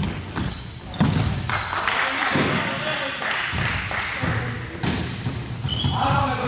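Basketball play on a wooden gym floor: a couple of ball thuds, short high sneaker squeaks near the start and again near the end, and players' indistinct voices.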